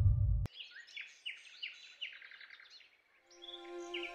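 Theme music cuts off about half a second in, followed by a bird singing a rapid series of short falling chirps that fade away. Soft background music with sustained notes comes in near the end, with another chirp over it.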